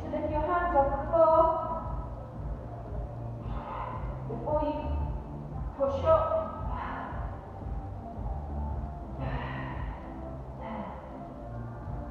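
A woman's voice in short breathy bursts, gasps and exhales of effort during push-ups, every few seconds, over background music with a low repeating beat.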